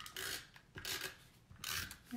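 Three short, dry scrapes of card stock rubbing and sliding over paper as the panel is handled and pressed down.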